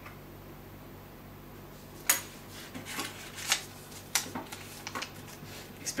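A pen and a small slip of paper being handled on a tabletop: after a quiet start, a sharp click about two seconds in, then a series of smaller clicks and crinkles as the paper is folded.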